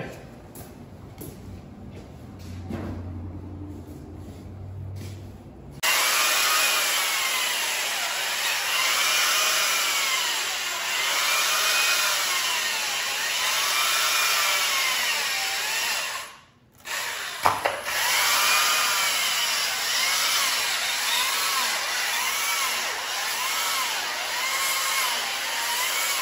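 Electric chainsaw cutting into a block of ice, starting suddenly about six seconds in. Its motor whine dips and rises over and over as the chain bites into the ice and frees again. It stops for about a second some two-thirds of the way through, then cuts again.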